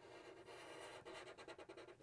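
Faint sound of a Sharpie felt-tip marker drawing a line on paper: a soft rub, turning into a quick run of small scratches in the second half.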